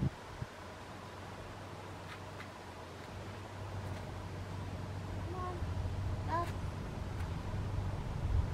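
A low, steady rumble that slowly grows louder, with a few faint short squeaks or calls about five and six seconds in.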